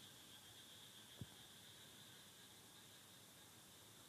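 Near silence: faint recording hiss, with one soft brief tick about a second in.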